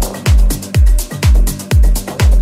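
Progressive house music with a steady four-on-the-floor kick drum at about two beats a second (roughly 128 BPM). Each kick drops in pitch, with hi-hats ticking between the kicks over a held low synth note.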